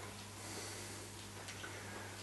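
Quiet room tone: a steady low hum under faint hiss, with a couple of very faint clicks.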